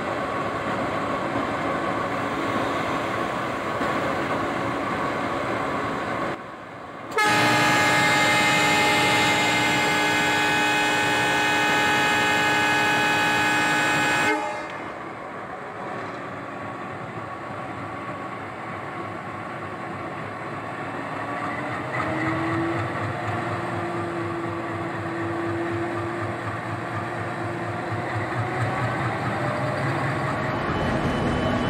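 Train running with a steady rumble. About seven seconds in, a train horn sounds as one long, loud chord of several tones for about seven seconds, then the quieter running carries on, with an even rhythmic beat in the last third.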